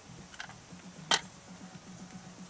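A single sharp click about a second in, with a fainter one before it, over a faint steady low hum.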